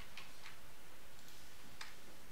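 A few sharp computer-keyboard key clicks, a couple near the start and one near the end, over a steady background hiss.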